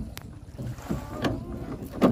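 Wooden oars of a rowing boat being worked against their mounts on the gunwales: a sharp click near the start, then irregular wooden knocks and creaks, with wind rumbling on the microphone.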